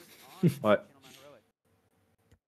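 A man's voice briefly says "ouais", just after a faint rubbing hiss, and the sound then drops to silence.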